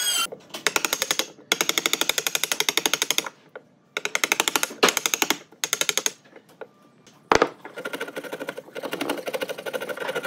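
Hand wood chisel cutting out a notch in a timber beam: bursts of rapid, even clicking as the blade chops through the wood fibres, with short pauses between, and one sharp knock about seven seconds in.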